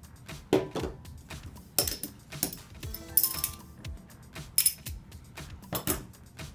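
Flat steel washers used as pattern weights clinking against each other as they are lifted off a paper pattern and stacked in the hand: several sharp metallic clinks over background music.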